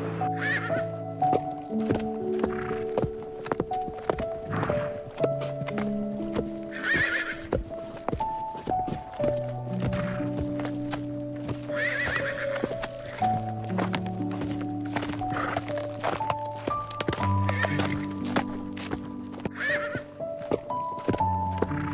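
Horses neighing about half a dozen times, spread through the clip, over hooves galloping in a quick run of knocks. Background music with a stepping melody plays throughout.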